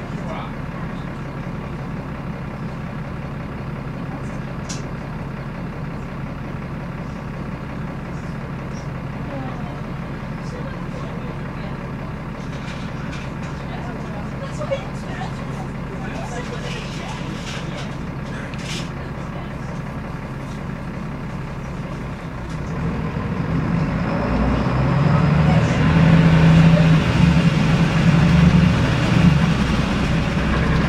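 Volvo D7C six-cylinder diesel engine of a Volvo B7L single-deck bus, heard from inside the passenger saloon, idling steadily; about 22 seconds in it revs up and grows louder as the bus pulls away.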